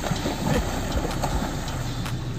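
Feet running and splashing through shallow seawater, a few irregular splashes over a steady rumble of wind and surf on the phone microphone.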